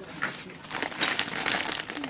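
Clear plastic bag crinkling as it is handled, an irregular crackling that grows denser about a second in.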